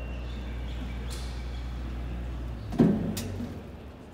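GMG electric slab scissor lift lowering its platform: a steady low hum from its hydraulics that stops short about two and a half seconds in, followed at once by a single clunk and a lighter click.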